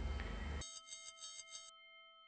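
A soft bell-like chime about half a second in, with several tones ringing together; it shimmers in pulses for about a second, then rings on faintly.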